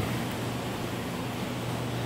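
Steady room background of running machinery: a low hum under an even hiss.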